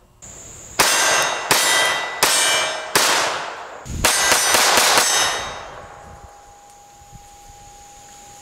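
Armi Galesi .32 ACP (7.65 mm) blowback pocket pistol fired nine times: four shots about two-thirds of a second apart, then a quick string of five, each shot with a ringing tail.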